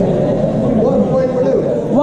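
Indistinct, overlapping voices of several people talking in a large, echoing hall, with one man's voice coming through more clearly partway in.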